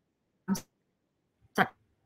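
Two brief vocal sounds from a woman pausing mid-sentence, short hesitation noises about a second apart, with near silence between them.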